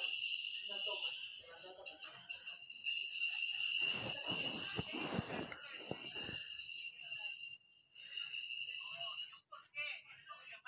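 Garbled mix of audio from many videos playing on top of one another: a steady high-pitched whine with muddled voice-like sounds beneath, and a loud harsh burst lasting about two seconds near the middle.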